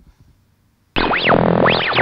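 Electronic transition sting: a short synthesized jingle of quick pitch sweeps swooping up and down, starting suddenly about a second in.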